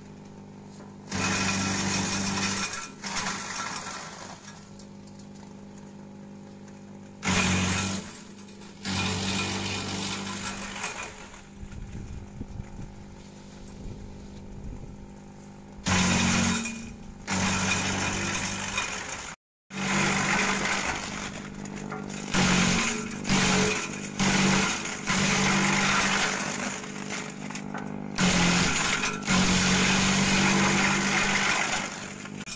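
Kelani Komposta KK100 compost shredder's electric motor running with a steady hum, broken again and again by loud bursts of chopping as leafy green branches are fed in and shredded. The sound cuts out for an instant about two-thirds through.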